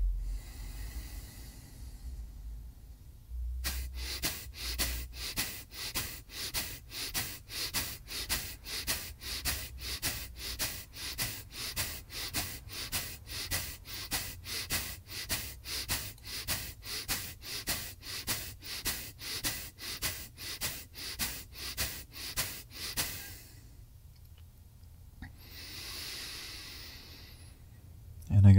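Kapalbhati breathing: a fast, even series of sharp, forceful exhales through the nose, about two a second, for some 36 breaths. Near the end they stop and give way to one slow, deep breath.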